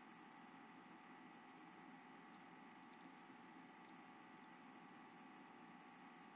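Near silence: faint room tone with a steady low hiss.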